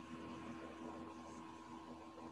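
Faint steady hiss with a low, constant electrical hum: room tone picked up by an open microphone.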